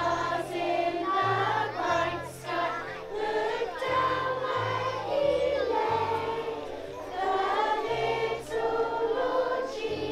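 A group of women and young children singing a song together, with a steady bass line of held low notes under the voices.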